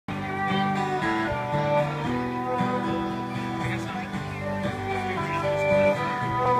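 Music played on guitar-like plucked string instruments, held notes changing every half second or so.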